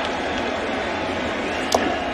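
Steady ballpark crowd murmur, with a single sharp crack of a wooden bat fouling off a pitch near the end.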